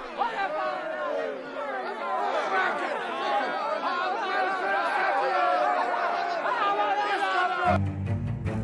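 Many people talking at once, an indistinct crowd chatter with no clear single voice. It cuts off just before the end, when low bowed-string music begins.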